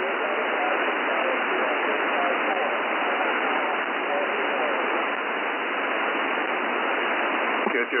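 Shortwave receiver audio from a 40 m lower-sideband amateur net: a steady hiss of band noise and interference, cut off sharply above and below the voice band, with a weak voice only faintly showing through it. A clearer voice comes in near the end.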